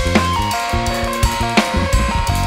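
Drum kit played in a groove: kick and snare hits with Meinl Byzance cymbals, the sharpest strikes about a second and a half in and at the end. Under it runs a band track of bass and sustained piano and synth tones.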